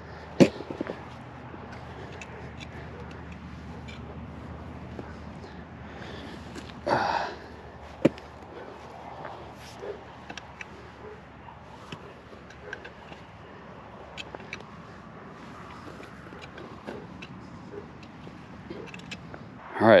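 Metal garden rake scratching seed into tilled rocky clay soil: faint scrapes and small clicks of the tines against soil and stones over a steady hiss, with a brief louder burst about seven seconds in.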